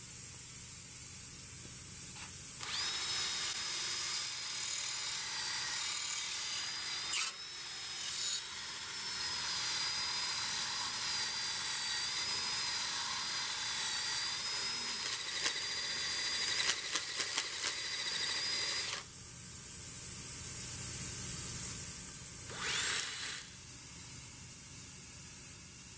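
A small electric power tool runs steadily for about sixteen seconds with a high whine, briefly dropping out about seven seconds in, with a few sharp clicks near the end of the run. It then stops, and a short second burst follows near the end.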